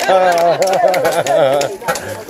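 A voice chanting in quick, repeated up-and-down swoops of pitch that stop a little before the end, with a few sharp clicks over it.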